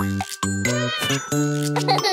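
Cartoon cat meowing once, about halfway through, over a children's song backing of short, rhythmic low chords.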